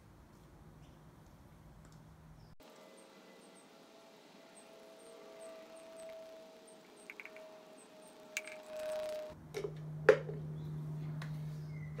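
Engine oil poured from a plastic measuring jug through a funnel into a Briggs & Stratton mower engine's filler: a faint, steady pour lasting several seconds. It is followed by a single sharp knock about ten seconds in.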